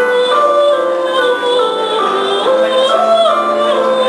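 A woman singing with instrumental accompaniment, holding long notes that step up and down in pitch.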